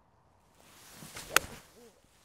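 Golf iron swung through and striking a ball off the tee: a rising swish of the downswing, then one sharp click of clubface on ball about a second and a half in. The strike is a clean, descending blow that just brushes the turf.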